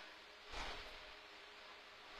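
Near silence: faint steady hiss of room tone, with one brief soft noise about half a second in.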